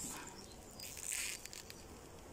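Faint buzzing of a honeybee colony from an open nuc box, a little louder about a second in.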